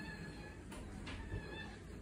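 Small dog whining: thin, high whines at the start and again just past the middle, with two faint clicks between them.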